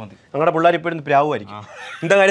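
A man speaking animatedly, his voice swooping up and down in pitch, with a breathy laugh near the end.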